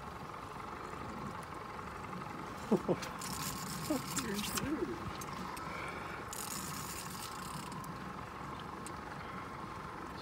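A steady hum with a faint hiss under it. A man says "oh yeah" and laughs about three seconds in.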